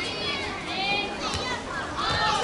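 Children's high-pitched voices shouting and calling out during a team game, several at once.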